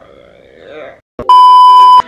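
A loud, steady electronic bleep tone, one unwavering pitch, starting a little over a second in after a brief gap of dead silence. It is an edited-in bleep of the kind used for censoring.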